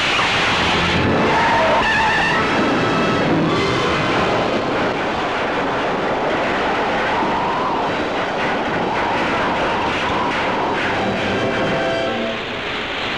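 Film sound effect of a vehicle running hard with skidding tyres, a dense steady noise with a wavering squeal that rises and falls.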